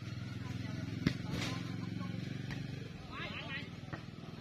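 A ball struck once in a foot-volleyball rally, a single sharp thump about a second in, over the steady low hum of an idling engine, with brief voices.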